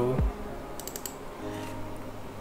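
Computer keyboard keystrokes, a quick run of clicks about a second in, over soft background music.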